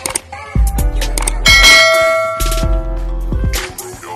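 Intro music with a steady bass beat. A click-like sound effect comes early, and a bright bell-chime sound effect rings out for about a second, starting about one and a half seconds in.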